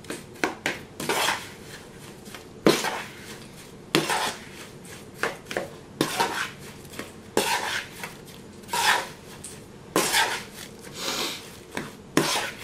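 Metal spoon stirring and folding snow ice cream in a plastic mixing bowl: irregular scrapes and clicks of the spoon against the bowl, roughly one or two a second, with the wet snow mixture crunching.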